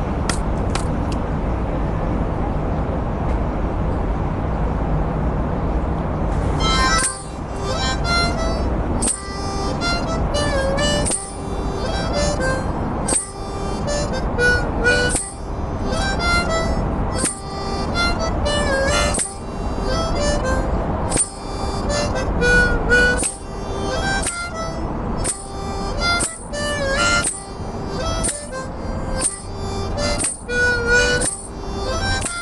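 A low, steady rumble of background noise, then about seven seconds in a harmonica starts playing a melody in short phrases with brief breaks between them.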